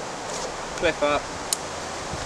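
Steady hiss of wind moving through woodland leaves, with a single sharp click about one and a half seconds in.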